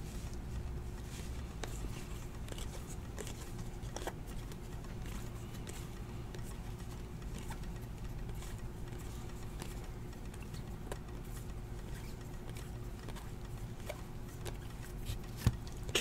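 Faint, scattered clicks and rustles of a stack of glossy trading cards being slid through and flipped one at a time in the hands, over a steady low hum.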